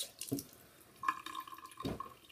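Water from a bathroom tap running and splashing into the sink, with a steady high tone coming in about halfway through and a brief knock just before the end.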